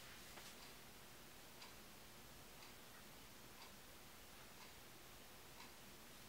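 Faint ticking of a wall clock, about once a second, over near-silent room tone.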